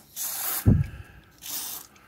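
WD-40 aerosol can sprayed in two short hissing bursts onto a vinyl seat cover, with a low thump between them. The spray is applied to lift china-marker and wax-pencil marks off the vinyl.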